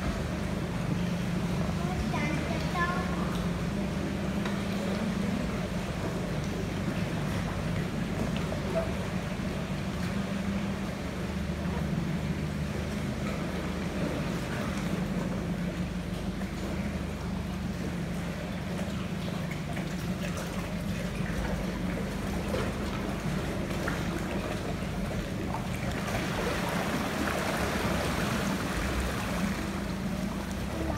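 Boat's outboard motor idling steadily, a low even hum. Near the end, a broader rushing noise of water and wind rises over it.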